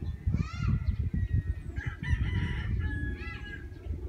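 Chickens calling: three separate calls, one just after the start, one in the middle and a short one near the end, over a steady low rumble.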